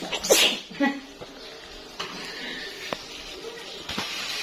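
A person sneezes once, sharply, about a third of a second in. After it comes a faint steady hiss with two light clicks.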